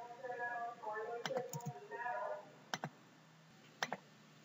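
A few computer keyboard keystrokes, sharp clicks coming in close pairs, while someone murmurs quietly during the first half.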